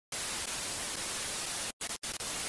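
TV static: a steady hiss of white noise that cuts out briefly twice near the end.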